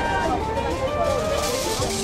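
Busy street sound with passers-by talking, mixed with background music.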